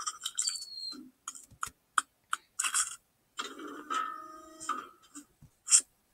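Short pops and clicks one after another, with a brief tone in the middle, from the #MetKids animated logo intro playing back on a computer as the letters build up on screen.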